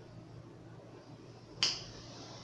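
Knife blade sawing slowly through a thick foam mattress, a faint rasp, broken about one and a half seconds in by a single sharp click.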